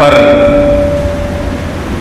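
Public-address microphone ringing with a single steady mid-pitched tone, slowly fading, over a low hum from the hall's sound system.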